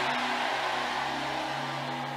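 A sustained chord of background music held steady under the noise of a large congregation in a hall, the crowd noise slowly dying down.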